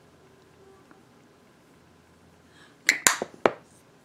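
Quiet room tone, then about three seconds in a quick run of three or four sharp clicks.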